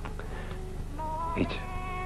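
Soft, sustained chord of background film score, changing to new notes about a second in, over a steady low electrical buzz in the old soundtrack; a voice says one short word midway.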